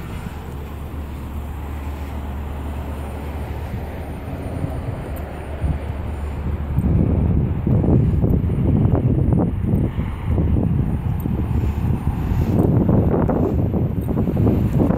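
A steady low hum, then from about seven seconds in, wind buffeting the microphone in uneven gusts.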